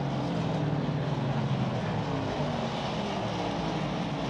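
A pack of NASCAR Cup Series stock cars with V8 engines running at racing speed, several engine notes layered together, their pitch sliding slowly down over the few seconds.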